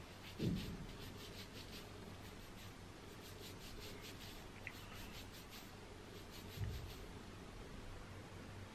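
Fingertips scratching and rubbing through damp, curly hair on the scalp as a soap nut shampoo is worked in. The sound is faint: a run of quick scratchy strokes, about four a second, with two low thumps, one about half a second in and one near the end, as the loudest sounds.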